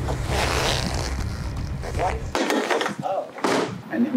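Plastic wheelie-bin lid handled as something is thrown in: scraping and a few knocks and thuds. Background music with a bass line runs under it and cuts off about two and a half seconds in.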